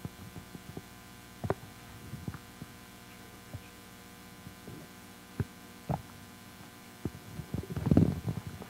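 Steady electrical mains hum on the sound system, with scattered thumps and knocks of a hand-held microphone being handled as it is brought to an audience member. The knocks cluster just before the end.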